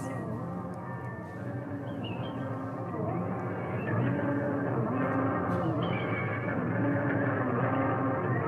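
Electronic music with layered sustained tones and gliding pitches, growing louder about halfway through.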